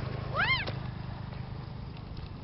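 A cat meowing once: a short call that rises and falls in pitch, about half a second in.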